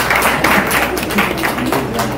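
Audience applause: many hands clapping in quick, dense claps.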